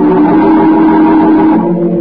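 A musical bridge played on an organ: a loud chord held steadily, which moves to a new chord about a second and a half in.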